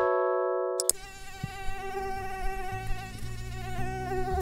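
A short held chord from a logo sting cuts off about a second in. Then a mosquito's whining buzz in flight starts and hums on steadily.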